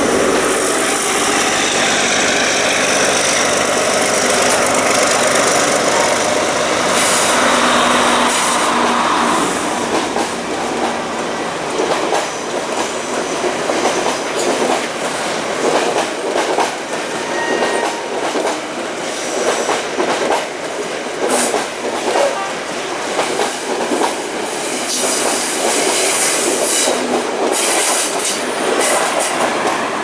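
Passenger trains running past close by on curved track, a steady rolling rumble of wheels on rail. From about a third of the way in, the wheels clack repeatedly and irregularly over rail joints.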